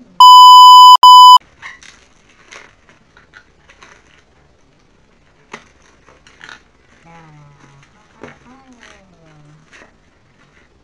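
A loud, steady, high electronic beep lasting about a second, with a short break near its end, then faint crinkling and clicking of plastic packaging being handled, and a low murmuring voice near the end.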